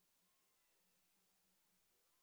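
Near silence: the soundtrack is essentially empty.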